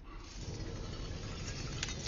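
Film sound effects: a low rumbling swell that grows louder, with a few sharp metallic clicks near the end as the film's gauntlet scene plays.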